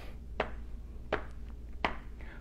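Hands patting on the thighs, tapping out a steady count-in beat: three light pats about three quarters of a second apart, over a faint low room hum.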